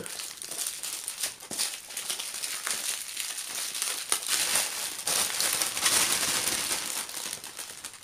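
Small plastic packets of diamond painting drills crinkling and rustling as they are gathered by hand and put into a larger clear plastic bag, with many small clicks of packets knocking together.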